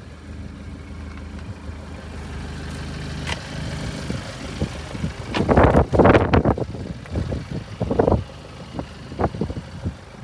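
BMW 520d's four-cylinder diesel engine idling with a steady low hum, broken by louder bursts of noise about halfway through and again shortly after.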